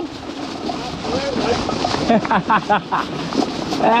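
Steady rushing noise of a gravel bike rolling along a rough dirt track, with wind on the microphone. A man's voice talks briefly partway through.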